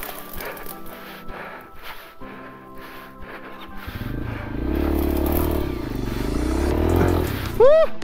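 Background music, joined about halfway through by a dirt bike engine whose revs rise and fall as it climbs the trail. A short shout near the end.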